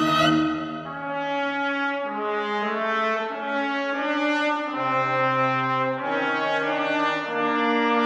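Contemporary chamber music for a mixed ensemble of winds, brass and string quartet, with the brass to the fore, playing slow held chords. Several instruments sustain notes together that shift every second or so, and a low note comes in for about a second around the middle.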